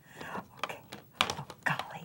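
Irregular light clicks and taps from small plastic craft supplies, a dye-ink re-inker bottle and sponge, being handled on a tabletop.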